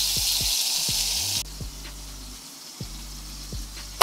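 Ribeye steak sizzling in a hot oiled pan, a loud even hiss that cuts off abruptly about a second and a half in. Background music with steady low tones and a soft regular pulse runs throughout.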